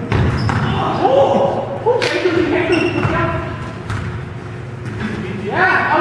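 Players' shouts and calls echoing in a gymnasium, with a few thuds of the soccer ball being kicked, the clearest about two seconds in.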